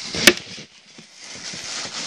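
A single sharp knock about a quarter second in, then faint rustling: handling noise as the camera is bumped and the fabric is worked by hand.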